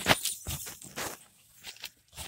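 A bare hand mixing potting soil with perlite in a plastic tub: irregular gritty rustling and scraping that dies down for a moment a little past halfway.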